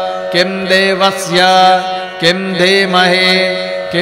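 A voice chanting Sanskrit verses in three short recited phrases over a steady drone.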